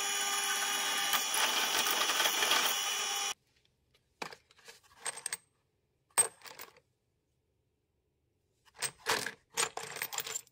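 Drill press drilling through a rectangular metal tube, steady machine noise that cuts off suddenly just over three seconds in. Then steel bolts clinking and rattling in short spells as a hand rummages through a plastic bin of them.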